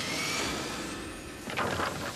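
Cartoon sound effect of a flying vehicle rushing by: a hissing whoosh that starts suddenly and slowly fades, with a short second sound about a second and a half in.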